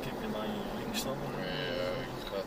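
Vehicle driving along a sandy track, heard from inside the cab: steady engine and road noise with a low droning tone that wavers in pitch, and a single sharp click about a second in.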